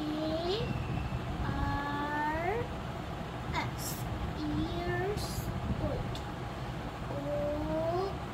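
A person's voice making several drawn-out hums or vowel sounds, each rising in pitch at its end, over a steady low rumble.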